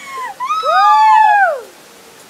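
Several high-pitched drawn-out vocal calls, overlapping, each rising and then falling in pitch like a siren. The loudest is about a second long in the middle.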